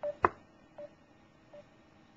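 Short electronic beeps about every three-quarters of a second, growing fainter: a computer call app's calling tone while redialling a dropped call. A single sharp click about a quarter of a second in is the loudest sound.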